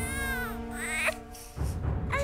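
A newborn baby giving two short whimpering cries, one at the start and one about a second in, over soft background music with held notes.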